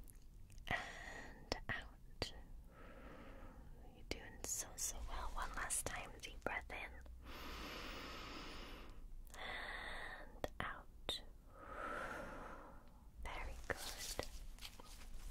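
Close-up whispering in short phrases with pauses between them, mixed with sharp little clicks and taps from gloved hands handling a stethoscope.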